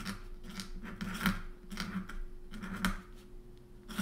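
A metal pen nib scratching across sketchbook paper while a word is written in ink. It comes as a series of short, scratchy strokes, several a second.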